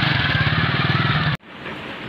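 A Honda motorcycle's small single-cylinder engine running with a steady pulsing beat, which cuts off abruptly about one and a half seconds in.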